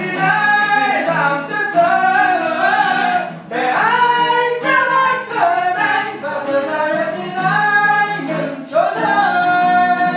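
A voice singing a slow Vietnamese song with long held, sliding notes over a strummed acoustic guitar, with short breaks between phrases a few seconds apart.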